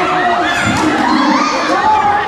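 A courtside crowd shouting and cheering, with children's voices among many overlapping voices.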